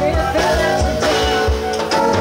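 Live band music: a drum kit and bass keep a steady beat under sustained keyboard and other instrument tones, with a female singer's voice briefly at the start.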